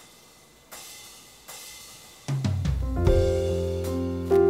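A worship band starts a song: two ringing cymbal strokes, then bass and keyboard chords come in a little past two seconds and build.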